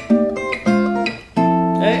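Steel-string Faith acoustic guitar played fingerstyle in a chord solo progression: three chords plucked one after another, each left ringing.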